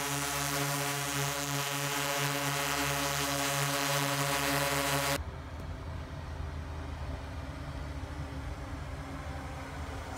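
Multirotor drone's propellers humming loudly at a steady pitch. About five seconds in, the sound cuts abruptly to a fainter, lower steady hum.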